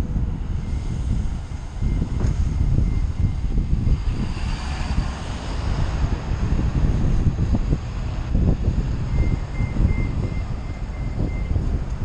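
Wind rumbling on the microphone of a camera on a moving bicycle, with road traffic going by; a vehicle passes with a rush about four to six seconds in.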